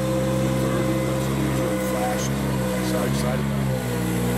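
A motor or engine running steadily, a constant hum of several level tones that does not change, with faint speech over it.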